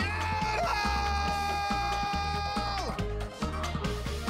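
A man yodelling loudly through a megaphone: a short upward yodel break, then one long held high note for about two seconds that drops away near the three-second mark, over a background music track with a steady bass beat.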